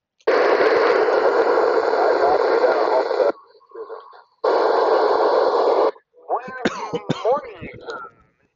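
Kenwood TM-V7 FM transceiver's speaker receiving a weak station on a simplex channel: two bursts of loud hiss with a faint voice buried in them, each cutting in and off abruptly as the squelch opens and closes. A voice follows near the end.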